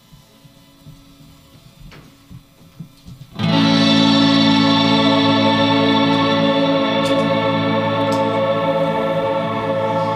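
A live indie rock band starting a song: after about three seconds of faint stage noise, a loud sustained chord comes in suddenly and is held steady.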